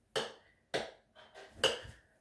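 Three short footsteps on a hard floor, spaced about half a second to a second apart.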